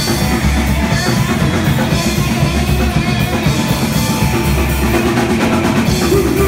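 Rock band playing live and loud: a drum kit with a pounding bass drum, electric guitar and bass guitar.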